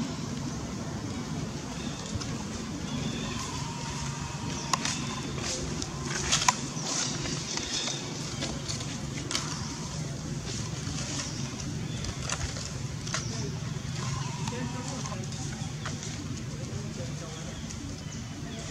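Indistinct background voices over steady outdoor ambience, with a few sharp clicks and crackles, the loudest about six seconds in.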